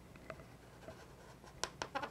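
Black Sharpie marker drawing on an inflated latex balloon: faint strokes of the felt tip on the rubber, with a few louder strokes near the end.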